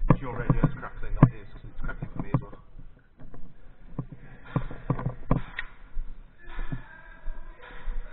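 Airsoft gunfire: sharp pops in two bursts of quick, uneven shots, the first bunch near the start and a second about four seconds in, with indistinct voices among them.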